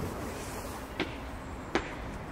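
Quiet open-air background noise with two short, sharp clicks, one about a second in and one near the end.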